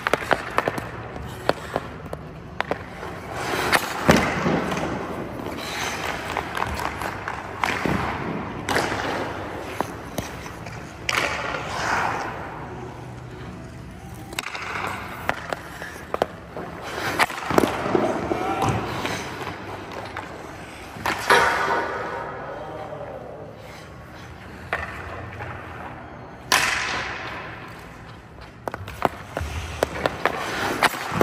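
Hockey skate blades scraping and carving on ice, repeated swishes of a second or two, with sharp cracks of a stick striking pucks as shots are fired at a goaltender.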